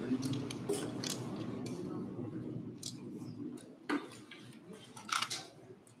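Low background talk in a meeting room, fading after about three seconds, with several short sharp clicks, the loudest about four and five seconds in.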